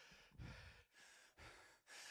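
Near silence with a couple of faint breaths into a handheld microphone.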